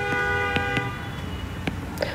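A vehicle horn held in one steady two-note blast that stops about a second in, with a few faint ticks around it.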